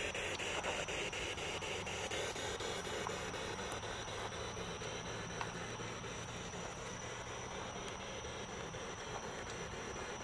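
Spirit box sweeping through radio frequencies: a steady static hiss broken by quick, regular clicks as it steps from station to station, with no voice coming through.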